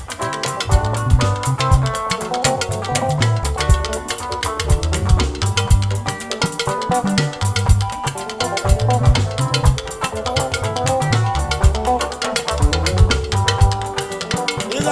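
Live band playing instrumental dance music: electric guitar lines over a drum kit and bass guitar, with a steady driving beat.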